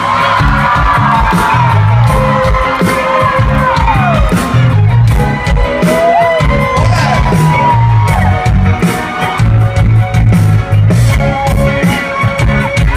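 Live rock band playing: a steady drum beat over a heavy bass line, with gliding lead notes on top and some whooping from the crowd.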